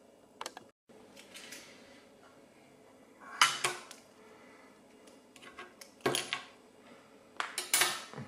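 Short clattering clinks from a parts tray and tools being handled and set down on the bench while a lock is readied for gutting. They come in a few brief bursts: near the start, about three and a half seconds in, about six seconds in, and a busier cluster near the end.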